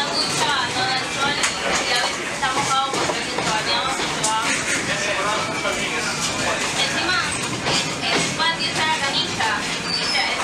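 Train rolling along metre-gauge track with a steady rumble, with indistinct voices talking over it.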